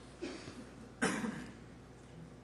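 A person coughing faintly twice, a weak cough about a quarter second in and a stronger one about a second in, in a pause between spoken sentences.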